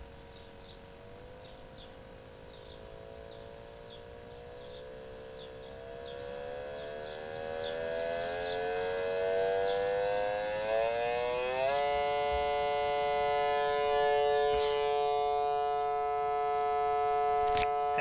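Audio tone from a square-wave oscillator fed through a four-pole sine-wave filter and played on a loudspeaker. As the oscillator is tuned up from 39 Hz toward 144 Hz, the tone rises slowly in pitch and grows louder, then holds steady for the last third. A single click comes near the end.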